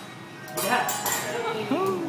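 Metal teppanyaki spatulas clinking against each other and the steel griddle, a few quick clinks about half a second in, followed by a drawn-out voice-like call that rises and then slowly falls near the end.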